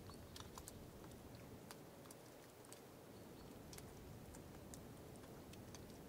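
Near silence: faint hiss with scattered soft clicks.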